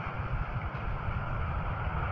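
Low, steady background rumble with a faint hiss above it, and no speech.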